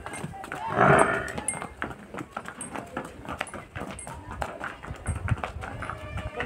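Water buffaloes walking past on brick paving: short knocks and clicks throughout, with one loud, noisy call from a buffalo about a second in.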